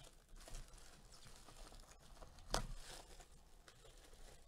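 Plastic shrink wrap being torn and crinkled off a cardboard trading-card hobby box: faint, scattered crackling, with one louder crackle about two and a half seconds in.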